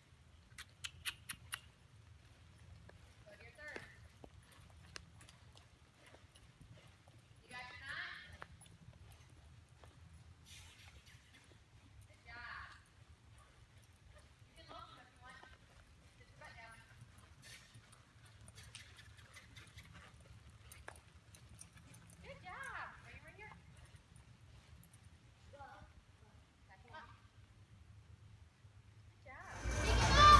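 A horse walking on soft arena dirt, its hoofbeats faint under a steady low hum, with a quick run of light clicks about a second in. Faint, distant voices come and go.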